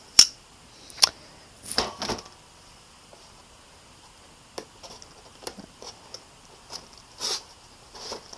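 Hands working open a small cardboard CPU retail box: a sharp click just after the start and a few more taps and scrapes of cardboard over the next two seconds, then sparse faint ticks and a short rustle near the end.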